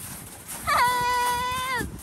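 A young child's single drawn-out whine, held on one steady pitch for about a second and dropping off at the end, starting about a third of the way in.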